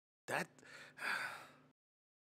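A man's quiet breathy laugh: a short huff of breath, then a longer breath out about a second in.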